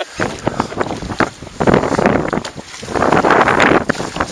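Strong wind buffeting the microphone in gusts, with waves slapping and knocking against the hull of a small aluminum rowboat as it rocks in whitecaps.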